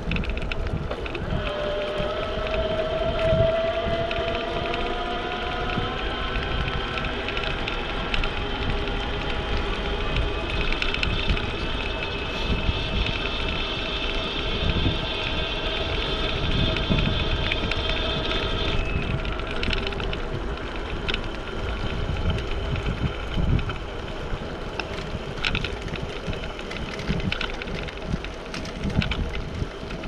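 Riding noise from a bike-mounted camera: wind rumbling on the microphone, with a thin mechanical whine that rises in pitch over the first few seconds and a higher whine in the middle that cuts off suddenly about two-thirds of the way through. A few light clicks and rattles come near the end.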